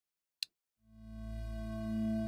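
A Massive synthesizer ambient pad holding one sustained note. It swells in slowly about a second in, then stays steady with a deep bass and a stack of even overtones above it. A single short click comes just before the note.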